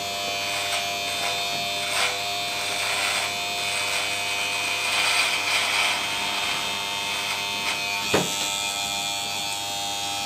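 Electric beard trimmer running steadily as it cuts through a thick beard, with louder, coarser stretches about two and five seconds in as the blades work through the hair. A brief sharp sound a little after eight seconds.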